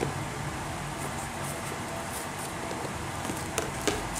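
Steady background hiss with faint rustles and light taps as a cardboard phone box and its plastic wrap are handled, one slightly louder click near the end.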